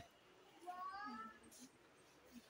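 Mostly near silence with room tone, broken by one faint, brief high-pitched vocal sound, slightly rising, from a person's voice, most likely a child's, starting a little past half a second in.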